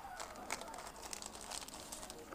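Faint crinkling of a clear plastic sleeve being opened and pulled off a paper kit, with a few small crackles.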